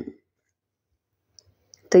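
A speaking voice trails off, and after a second of near silence a few faint short clicks come just before the voice starts again.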